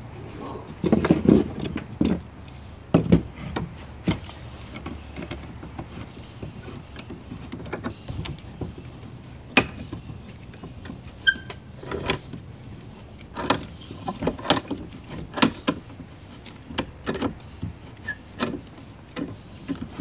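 Steel clamps being handled and fitted onto a glued timber beam: a sliding bar clamp and C-clamps giving irregular sharp metal clicks and knocks, with a short squeak now and then. The handling is busiest in the first few seconds.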